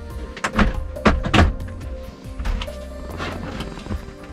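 Background music, with a handful of sharp clacks and knocks from the panels of a folding shower screen being moved. The loudest come in the first second and a half, with weaker ones later.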